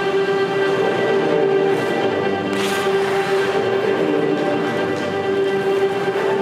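Slow orchestral program music with long held string notes, played over an ice rink's sound system. A brief hiss cuts through about two and a half seconds in.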